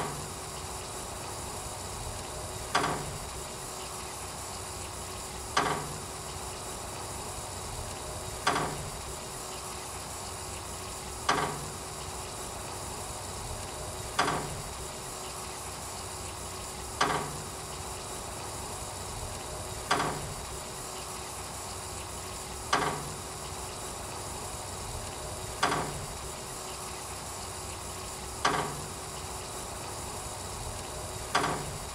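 Steady hiss of water spraying under pressure from a Hüdig Iromat II TD hose-reel irrigation system, with a faint steady hum. A sharp knock repeats evenly about every three seconds.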